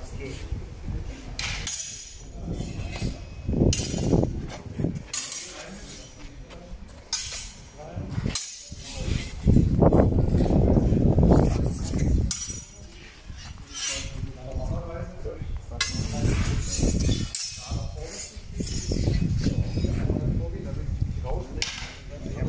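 Steel longswords clinking against each other at irregular moments as several pairs drill, over indistinct chatter from the participants.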